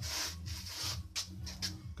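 Rubbing and scraping handling noise with a few clicks as a clamp meter is fitted around a wire, over a steady low electrical hum.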